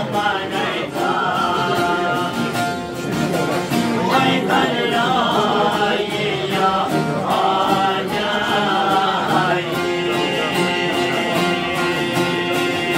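Men singing a folk song over fast, steady strumming of long-necked Albanian lutes.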